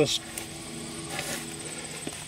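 Insects trilling steadily in the grass, an even high buzz, with a faint steady low hum through about the first second.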